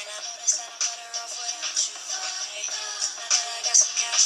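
An R&B song plays, with a sung vocal melody over a steady hi-hat beat. It sounds thin, with no bass.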